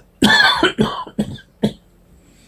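A man coughing: one hard burst of coughs about a quarter second in, followed by a few shorter coughs, the last one more than halfway through.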